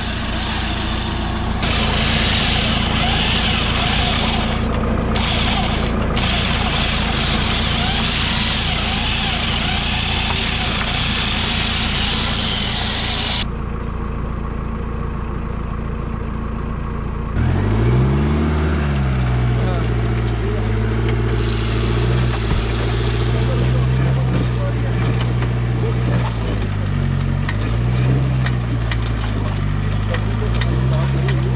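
An off-road jeep's engine revving up and down repeatedly, in a low gear, as it is worked out of soft sand, from a little past halfway on. Before it comes a steady rushing noise with a low hum that drops away about halfway through.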